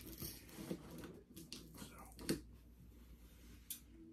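Faint rustling and soft clicks of a cardboard shipping box being handled as its taped flaps are worked open, with one sharper click about two seconds in.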